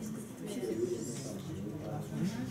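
Indistinct voices talking quietly, with no clear words, like low conversation among people in a room.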